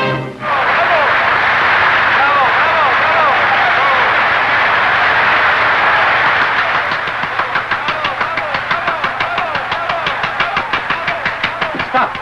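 An orchestral piece ends on a held chord in the first half second, and a large concert audience applauds and cheers, with shouts through the clapping. From about halfway through, the applause settles into even, rhythmic clapping of about four to five claps a second.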